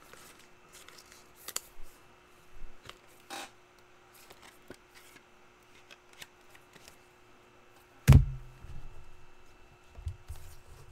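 Faint clicks and rustles of trading cards and packs being handled on a table, with a single loud thump about eight seconds in.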